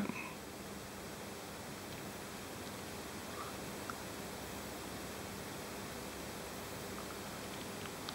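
Quiet, steady background hiss of room tone, with two faint small ticks a little past the middle.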